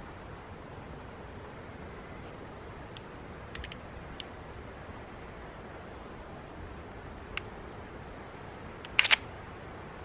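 Faint metallic clicks from handling a Colt 1911 pistol, then a sharper double click about nine seconds in.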